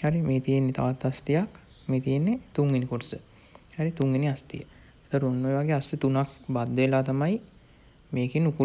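A man talking in Sinhala, in short phrases with brief pauses, over a steady high-pitched tone in the background.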